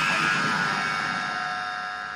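The final chord of a hardcore punk song ringing out after the band stops, its sustained distorted guitar tones and high wash fading steadily away.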